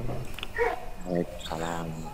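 Voices from participants' open microphones coming through a video-call's audio: a few short calls and one longer drawn-out call near the end, over a steady low hum and hiss.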